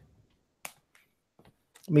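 A single sharp click as a page of a plastic-sleeved portfolio binder is turned, followed by a few faint ticks; a man starts to speak at the very end.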